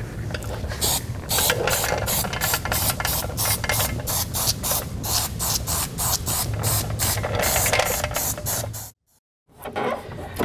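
Aerosol can of spray adhesive sprayed in rapid short bursts, about three or four hisses a second. The spraying stops abruptly near the end.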